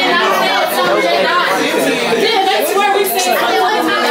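Several people chattering at once, voices overlapping with no single clear speaker.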